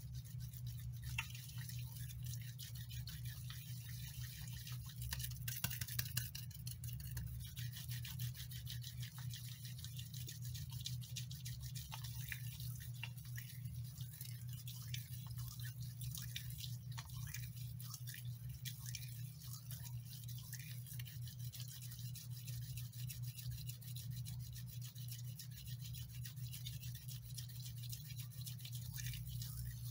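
Soapy, lathered hands rubbing and squeezing together without pause, making a continuous fine crackling of foam and bubbles. A steady low hum runs underneath.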